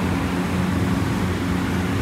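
A steady, fairly loud low mechanical drone with a few held low tones over an even hiss.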